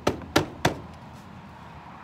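Three quick taps of a hand on the race car's dented front nose panel, all within the first second.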